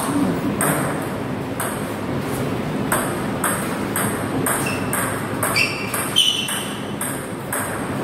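Celluloid-style plastic table tennis ball clicking off bats and table in a rally, about two hits a second, with a short break about two seconds in. A few brief high squeaks come near the end.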